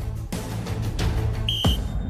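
Background music throughout, with one short, steady, high-pitched referee's whistle blast about one and a half seconds in, signalling the restart of play after a timeout.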